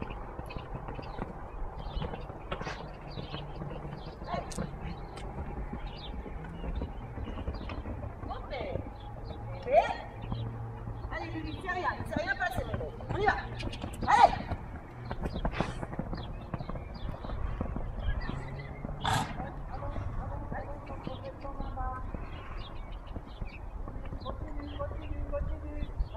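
Horses cantering on a sand arena, hooves thudding on the sand, with indistinct voices.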